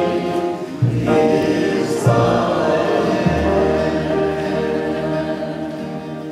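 A small group of voices singing a hymn together, accompanied by acoustic guitar and plucked upright bass notes, getting gradually quieter toward the end.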